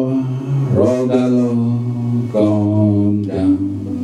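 A man singing a slow worship song into a microphone, in long held notes over a few drawn-out phrases.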